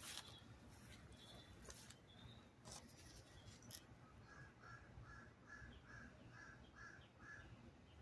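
Very quiet outdoor stillness with a few faint clicks. About halfway through, a bird calls a run of about eight short, evenly spaced notes, between two and three a second.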